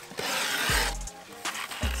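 A single rasping stroke of Mob Grip griptape being worked along the edge of a skateboard deck, lasting a little under a second. It plays under background music with a deep bass beat.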